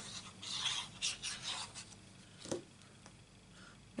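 Sheets of cardstock and vellum rustling and sliding against each other and the craft mat as they are handled, with one sharp tap about two and a half seconds in. The rustling dies down in the second half.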